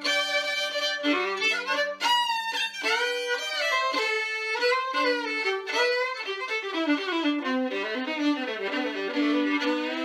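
Solo fiddle playing an old-time Appalachian tune, the melody bowed against a sounding drone string in double stops, closing on a long held note near the end.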